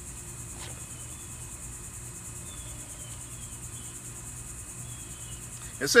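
Steady, high-pitched drone of insects, with a few faint, short falling chirps.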